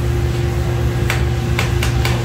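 A 55 lb commercial coffee roaster running with a steady low drone and hum. In the second half come a few sharp pops: the beans starting first crack.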